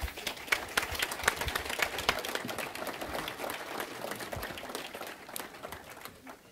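An audience applauding. The clapping starts abruptly and thins out over the last second or two.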